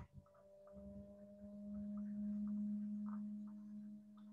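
A faint, steady low hum with fainter higher overtones, growing a little louder in the middle and fading toward the end.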